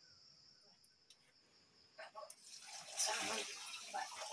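Water poured from a metal mug into a steel bowl, starting with a few clinks about two seconds in and becoming a loud, steady splashing. Crickets chirr steadily under it.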